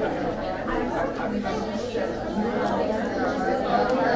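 Many people talking at once: an indistinct, continuous chatter of overlapping voices with no single voice standing out.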